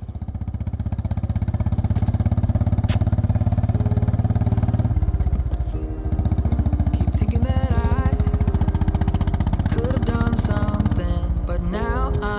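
Motorcycle engine running steadily, its rapid firing pulses heavy in the low end, under music; the engine note shifts about five seconds in, and a melody comes in about seven seconds in.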